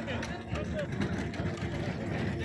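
A group walking on a paved street, with indistinct voices in the first second over a steady low rumble, and scattered faint footstep clicks.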